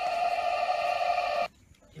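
A steady, unwavering buzzy tone that cuts off suddenly about one and a half seconds in.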